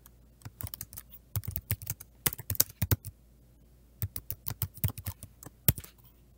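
Typing on a computer keyboard: quick runs of keystrokes, with a pause of about a second midway.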